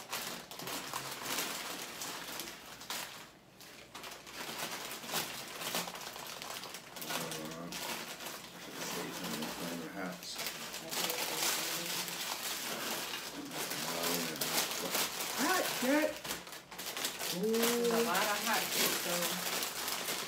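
Crinkling of plastic snack-chip bags and the rattle of crunchy chips being shaken out of them into glass dishes, a dense crackle throughout, with low talk in the second half.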